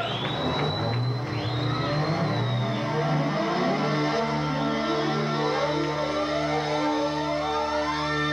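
Live rock band opening a song with keyboards and electronic effects. A held high tone and a wavering glide come first. From about four seconds in, low notes pulse about three times every two seconds, and a long sweep climbs steadily in pitch over the second half.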